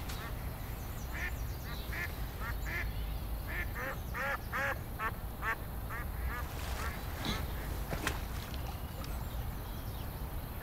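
Ducks quacking in a quick series of calls, busiest a few seconds in and thinning out after about seven seconds, over steady low background noise.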